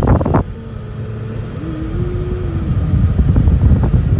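Car running at driving speed, heard from inside the cabin as a steady low engine and road rumble. It starts under a louder burst of noise that cuts off abruptly about half a second in.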